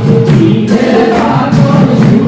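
Assamese dihanam: a chorus of voices singing a devotional chant through a microphone, with small hand cymbals striking in time.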